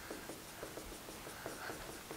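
Dry-erase marker writing on a whiteboard: a run of short, faint strokes as letters are written.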